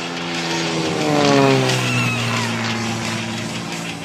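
Propeller aerobatic plane's engine on a low pass, growing louder, then dropping in pitch as it flies by about a second and a half in.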